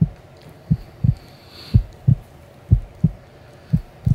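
Heartbeat sound effect: low double thumps, lub-dub, repeating about once a second.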